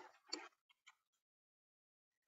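Near silence after a short trailing bit of speech at the very start, with a couple of faint clicks within the first second.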